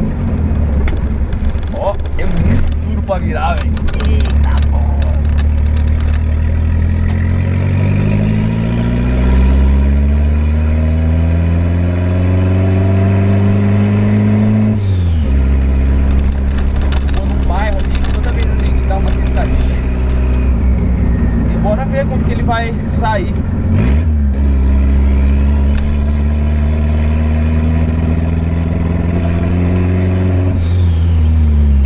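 Volkswagen Gol's engine heard from inside the cabin while driving, its note climbing steadily under acceleration. The pitch drops sharply about halfway through and again about three quarters of the way through, then climbs again.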